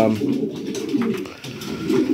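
Homing pigeons cooing in a small loft, low and continuous, fading briefly about three quarters of the way through.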